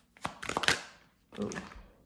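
Tarot cards being shuffled and handled by hand: a short burst of card rustles and slaps in the first second.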